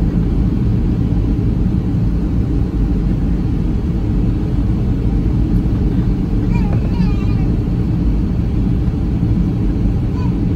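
Steady engine and airflow rumble inside the cabin of a Boeing 757-300 airliner in flight at low altitude on its descent, heard from a seat over the wing. The rumble is loud, even and deep, with no changes in thrust.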